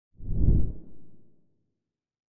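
A low whoosh transition sound effect that swells to a peak about half a second in and fades away by about a second and a half in.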